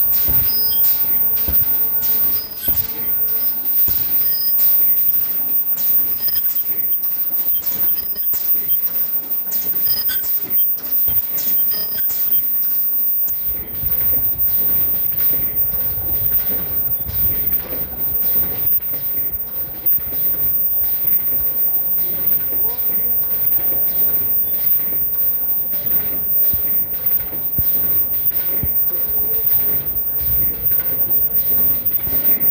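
Production machinery running with a steady rhythmic clicking, about two clicks a second in the second half, over a low rumble, with indistinct voices in the background.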